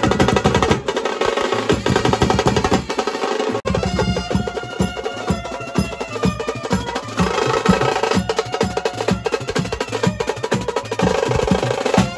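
Marathi Koli brass band playing: saxophones carry a melody over a fast, steady beat of hand-held drums and snare drums. There is a brief break in the sound about three and a half seconds in.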